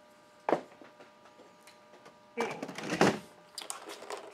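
Plastic toy blasters being handled: one sharp knock about half a second in, then a couple of seconds of plastic clattering and rattling near the end as a blaster is lifted.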